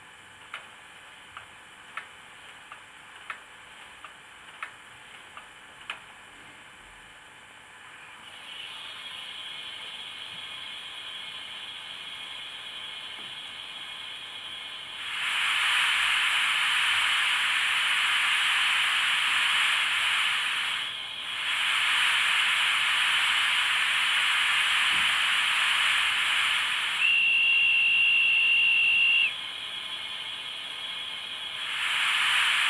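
Steam hissing from an HO-scale model steam locomotive's sound, building up about a quarter of the way in and growing loud about halfway, with a brief dip, then a single steady whistle blast of about two seconds near the end. Before the hiss, seven light clicks about two-thirds of a second apart.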